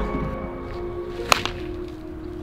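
A baseball bat hitting a ball once, a sharp crack about a second and a half in, over background music with held notes.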